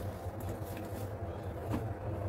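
Faint rustling of fresh coriander and mint leaves being pressed down by hand into a steel blender jar, over a low steady hum.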